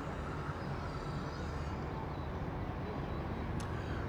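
Steady outdoor background noise: a low, even rumble with faint hiss and no distinct event, and a small tick near the end.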